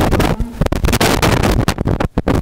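Handling noise from a stand-mounted microphone as it is gripped and repositioned by hand: loud, irregular crackling rubs and bumps.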